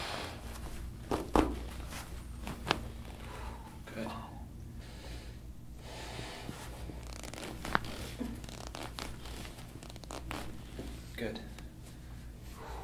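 Chiropractic spinal manipulation by hand on the back, giving sharp joint cracks: the loudest about a second and a half in, another near three seconds and a third near eight seconds, with softer crackling between.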